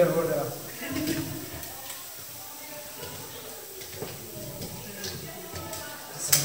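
Mostly quiet voices: a spoken word at the start, then faint murmuring, with a few faint clicks.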